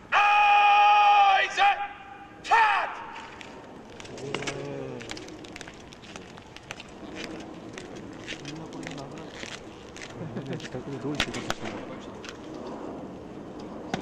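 A parade-ground drill command shouted with a long drawn-out first word, followed by a short shout and a falling final shout. After it come many irregular sharp clicks and knocks of soldiers' boots and drill movements on the parade ground.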